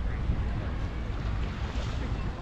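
Wind buffeting the microphone: a steady low rumble, with a faint wash of sea air and a few faint distant chirps or voices above it.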